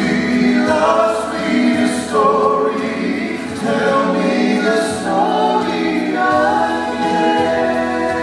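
Male gospel vocal trio singing in close harmony into microphones through a PA, holding long notes that change pitch together.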